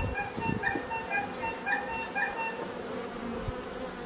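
Carniolan honey bees buzzing around an opened hive, with a light background tune of short repeated high notes. A few soft knocks about half a second in, from frames being handled in the hive.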